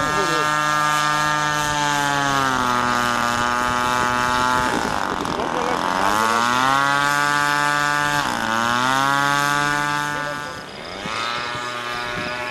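Radio-controlled model tow plane's engine and propeller droning steadily, its pitch dipping and recovering twice, about five and eight seconds in, then getting quieter near the end.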